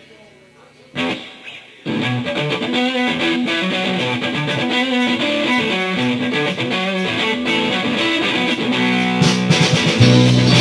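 Live rock band starting an original song: a single loud hit about a second in, then electric guitars and drums playing the intro together from about two seconds in.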